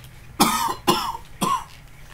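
A man coughing three harsh times, about half a second apart. He is nauseated by a foul-tasting jelly bean and feels he is about to be sick.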